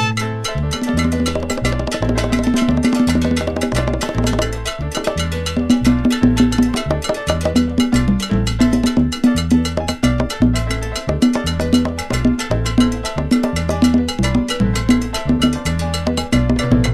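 Salsa band playing an instrumental passage, with a repeating bass line under dense, steady Latin percussion and no vocals.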